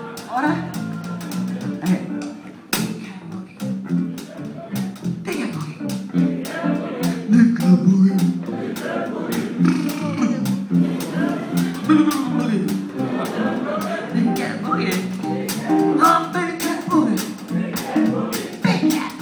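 Live blues band playing a boogie: electric guitar and drum kit with steady drum strikes, and a woman's voice at the microphone over the music.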